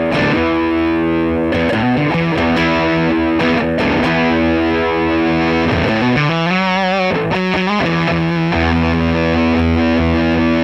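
Electric guitar (Stratocaster) played through a hand-built Jordan Bosstone fuzz clone into a Dumble-style tube amp: thick, fuzz-distorted notes sustaining into one another. A held note is shaken with a wide vibrato about six to eight seconds in.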